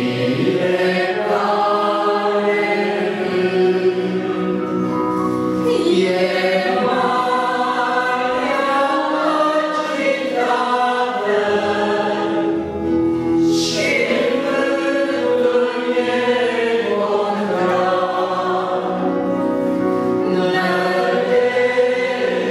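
A congregation singing a hymn together with accordion accompaniment, in long phrases with short breaks between them.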